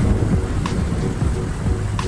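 A Keeway Cafe Racer 152 motorcycle riding along at road speed: a steady rumble of engine and wind noise, heaviest in the low end, with background music playing over it.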